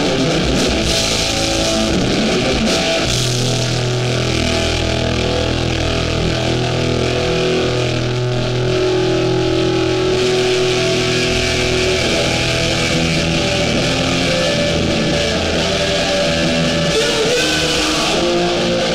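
A hardcore band playing live and loud: electric guitars, bass guitar and drums going steadily without a break.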